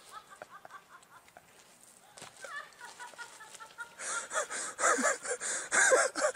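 A person laughing off camera in quick repeated bursts. About two-thirds of the way through it breaks into loud, breathy, gasping laughter.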